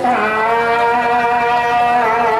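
A man's voice holding one long, steady chanted note into a handheld microphone, in a Khmer Buddhist chant.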